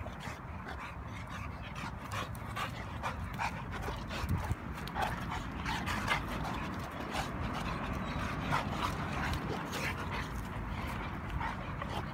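Two dogs play-fighting, a large mastiff-type dog and a bulldog-type dog, making a run of short, irregular dog noises as they wrestle and mouth at each other.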